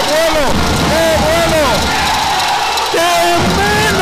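A voice calling out wordlessly in a string of short rising-and-falling notes, then holding a lower, wavering note from about three seconds in.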